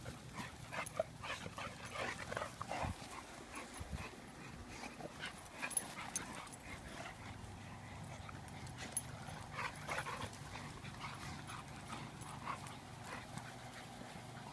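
American bully puppies and adult dogs at play, with short high-pitched puppy whimpers and yips scattered irregularly throughout.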